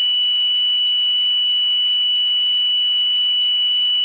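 Low-air warning alarm of a self-contained breathing apparatus: one steady, unbroken high-pitched tone. It signals that the air cylinder has reached the preset safe minimum needed to escape from the space.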